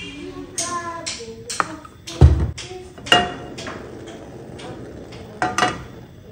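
Kitchen clatter: scattered taps and clinks of cookware and dishes, with one heavy low thump a little over two seconds in.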